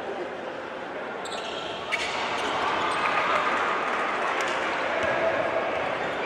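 Basketball game in an arena hall: steady chatter of voices, one sharp knock about two seconds in, then the ball bouncing on the hardwood as play moves up the court.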